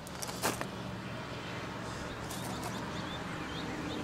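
A motor vehicle's engine running steadily, with a short crunch about half a second in and a few faint high chirps in the second half.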